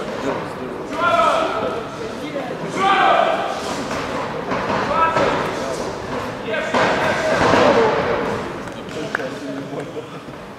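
People shouting in bursts in a large sports hall during a kickboxing bout, with thuds of gloved punches and kicks landing.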